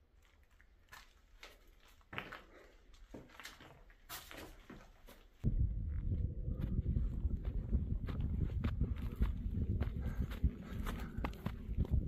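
Faint scattered footsteps and small scuffs, quiet at first. About five and a half seconds in, wind starts buffeting the phone's microphone, a loud low rumble that runs on under footsteps in the grass.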